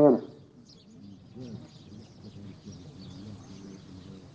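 A man's voice breaks off just after the start. Then small birds chirp faintly and steadily under faint, distant voices.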